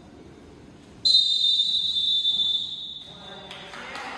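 Referee's whistle blown in one long, steady blast lasting about two and a half seconds, starting suddenly about a second in. It is the signal for the swimmers to step up onto the starting blocks.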